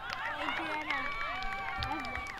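Several high-pitched voices shouting and calling out over one another on a playing field, with a few long held calls.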